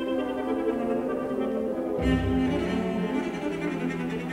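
Solo cello playing a melodic line with orchestral accompaniment; deeper low-string notes join about halfway through.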